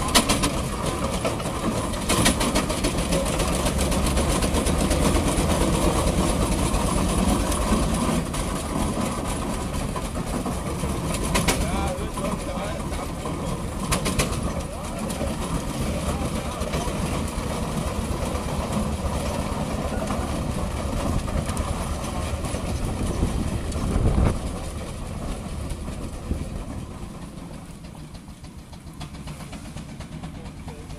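Steam roller's steam engine running steadily as the roller drives along, with a few sharp clicks. The sound fades near the end.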